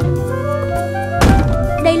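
A single heavy thunk about a second in as a wooden barrel is set down on a wooden floor, a cartoon impact effect, over steady background music.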